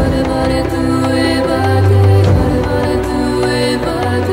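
Background music with slow, held chords over a deep bass note that swells about halfway through.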